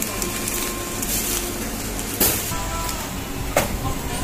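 Groceries being handled and lifted out of a plastic shopping basket, with two sharp knocks, about two and three and a half seconds in, over a steady room hum.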